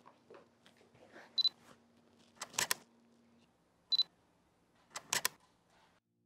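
A camera's short high focus-confirm beep followed by a double shutter click, twice: beep then shutter about a second later, repeated two and a half seconds on.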